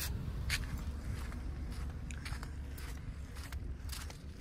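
Faint footsteps and a few light clicks over a low, steady hum.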